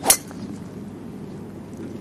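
A golf driver's metal clubface striking a teed-up golf ball: one sharp, ringing click just after the start.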